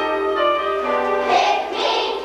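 A children's choir singing together, coming in on a new phrase at the start.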